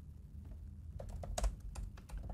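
Computer keyboard typing: a handful of uneven key clicks, most of them in the second half, as a few characters are typed and deleted again.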